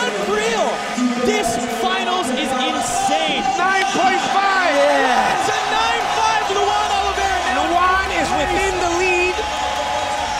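Arena crowd cheering and whooping, many voices shouting over one another, with no let-up.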